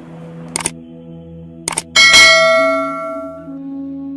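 Subscribe-button animation sound effects: two quick double clicks like a mouse click, then a bright bell ding about two seconds in that rings and fades out. A low sustained tone holds underneath.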